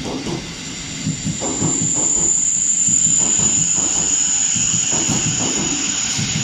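South Western Railway electric multiple unit passing at speed: wheels rumbling and clattering over the rails, with a high steady whine that grows louder about a second and a half in.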